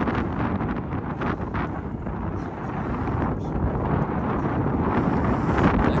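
Wind buffeting the camera's microphone: a steady, rumbling rush of noise.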